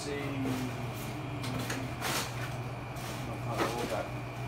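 Items being rummaged through and handled, with a few short scrapes and rustles, over a steady low hum.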